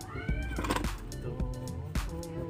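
A single short animal cry near the start, rising then falling in pitch, over steady background music.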